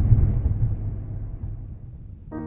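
Low road and engine rumble heard inside a moving car's cabin, fading steadily away.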